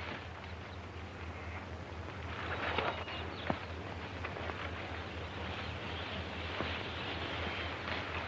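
Leaves and undergrowth rustling as people push through dense jungle foliage, heard over the steady hiss and low hum of an old film soundtrack. There are a few sharp clicks, and the rustling swells about two to three seconds in.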